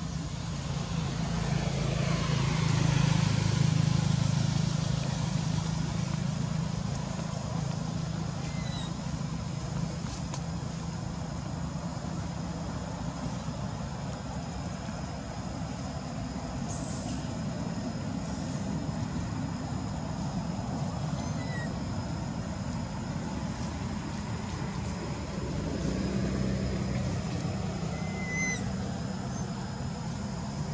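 A motor vehicle engine running steadily. It grows louder as it passes, a few seconds in, and swells again near the end.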